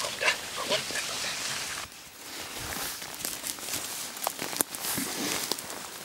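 An excited Siberian husky whining and yelping on its leash. About two seconds in this gives way to brush rustling and twigs crackling underfoot as the dog and walker push through forest undergrowth.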